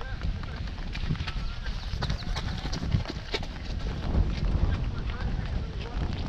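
A runner's footsteps slapping on wet asphalt, a series of quick taps, over a low rumble of wind on the microphone.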